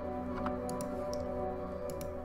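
Sustained synth pad chords from a layered Electrax patch playing back steadily, with a few light clicks scattered over it.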